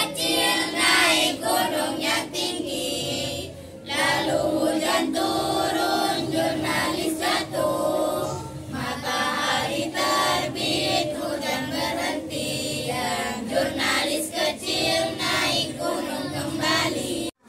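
A group of schoolgirls singing a song together in unison, with short breaks between phrases.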